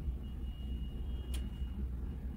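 Steady low background rumble with a faint, thin high-pitched tone, and one short click about a second and a half in.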